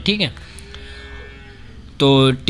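A word trailing off with a falling pitch, then a faint, steady, drawn-out tone lasting about a second.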